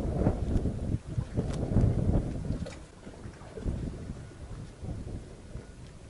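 Wind buffeting the microphone in gusts, a ragged low rumble that is strongest for the first few seconds and then eases off.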